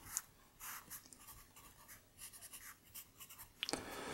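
Pencil writing on graph paper in a spiral notebook: a run of faint, short strokes.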